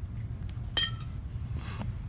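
A stainless-steel wax spatula set down with one sharp metallic clink that rings briefly. About a second later comes a short, soft scrape as the plaster dental cast is handled.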